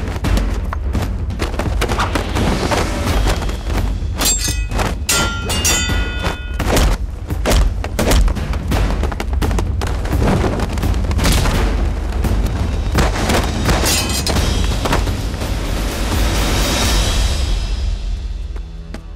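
Fight-scene soundtrack: dramatic music under a rapid string of punch, kick and body-impact sound effects. A few ringing hits come about four to six seconds in.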